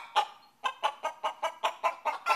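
A quick run of short, evenly spaced animal calls, about five a second.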